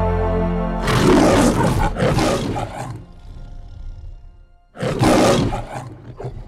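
Lion roaring over a held music chord: two roars about a second in, then another near the end trailing off in a shorter one.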